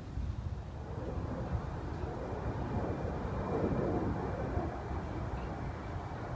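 Outdoor ambience: a steady low rumble, with a broader noise, like distant traffic, that swells about a second in, peaks past the middle and fades again.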